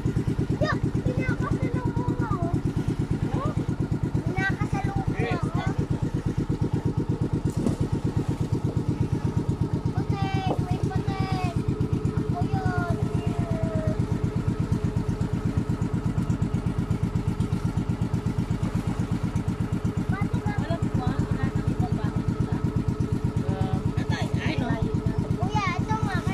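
Outrigger boat's engine running steadily under way, with a fast, even chugging beat.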